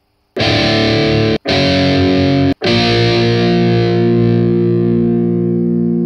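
Distorted electric guitar playing three chords: two short ones, then a third left ringing.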